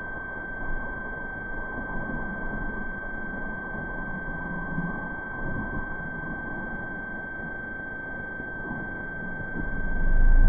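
A steady, high-pitched single-tone whine from the old video-tape recording, over a low, rough hiss.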